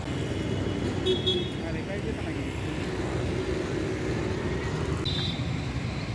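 Outdoor street traffic: a steady rumble of passing vehicle engines, with two short high-pitched horn toots, one about a second in and one near the end.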